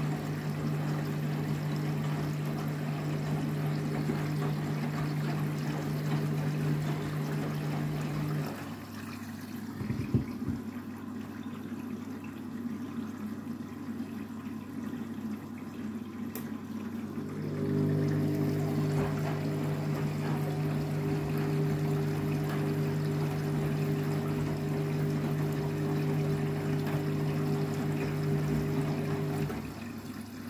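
Candy front-loading washing machine filling with water for a rinse while its drum motor tumbles the load. The motor hum stops after about eight seconds, a knock follows, and water keeps running through a pause. The drum starts turning again with a humming tone about halfway through and stops shortly before the end.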